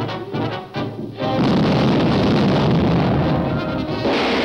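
Dramatic orchestral score with pulsing brass, then about a second in a sudden loud explosion whose rumble carries on under the music for the rest of the few seconds.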